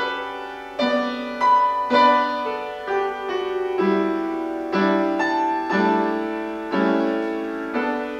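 Piano played slowly, with full chords struck about once a second and left to ring.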